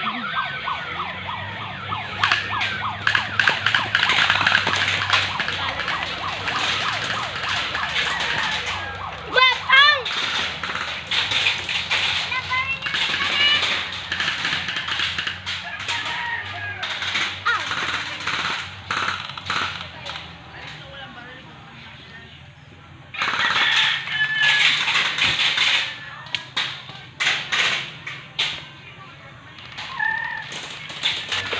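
Airsoft guns firing during a skirmish: many sharp pops and rapid bursts throughout, easing off for a few seconds about two-thirds through and then coming back dense and loud.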